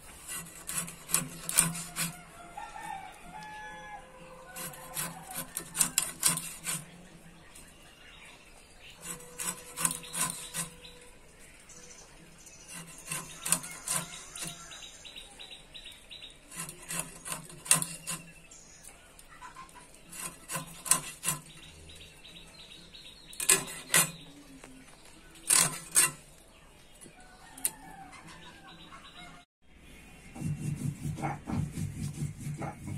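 Pangas catfish being worked against the edge of a boti, a fixed upright blade, in short scraping bursts of rapid strokes. There are about eight bursts, one every three to four seconds, as the dark skin is scraped and the fish is cut.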